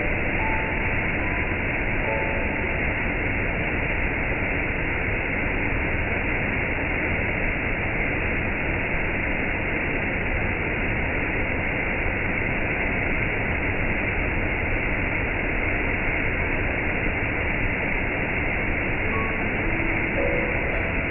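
Waterfall rushing steadily, a continuous even roar of falling water, with a few faint musical notes near the start and again near the end.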